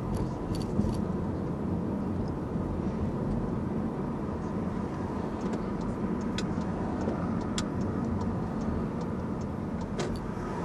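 Car driving in city traffic, heard from inside the cabin: a steady low rumble of engine and tyre noise, with a few faint scattered clicks.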